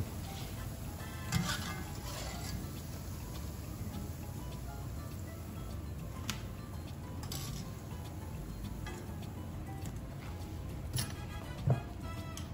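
Steady sizzling bubble of fritters deep-frying in hot oil in a wok, with a few light clinks of the wire spider strainer, under quiet background music.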